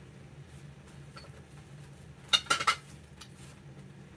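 A quick run of sharp clinks, hard ceramic knocking against ceramic, lasting about half a second halfway through, over a steady low hum.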